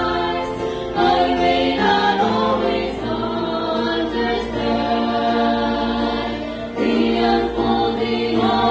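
Three women singing a gospel song together into handheld microphones, in held notes that change every second or two. The singing swells louder about a second in and again near the end.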